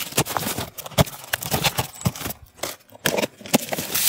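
A blade slitting the packing tape on a cardboard box, with irregular scraping and crackling of tape and cardboard as the flaps are worked open.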